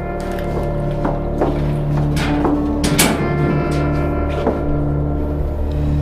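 Background music score: held, sustained chords with a handful of short percussive strikes in the middle.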